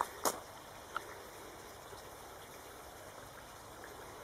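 Faint steady background hiss, with one short knock just after the start and a tiny click about a second in.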